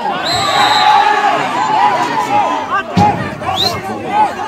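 Footballers shouting to each other across the pitch, with a short referee's whistle blast near the start and a single thump, like a ball being kicked, about three seconds in.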